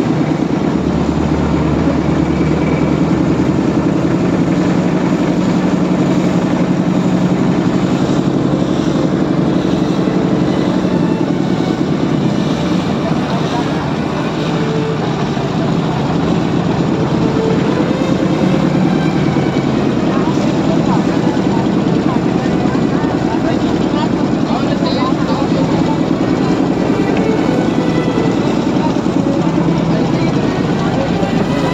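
Motorboat engine running steadily under way, a continuous drone mixed with the rush of water along the hull.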